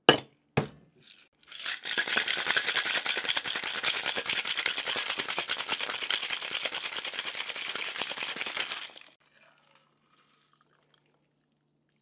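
A metal shaker tin is knocked down onto a pint mixing glass with a sharp clank and a second tap just after. Then ice rattles in the sealed Boston shaker in a fast, even rhythm for about seven seconds before it stops.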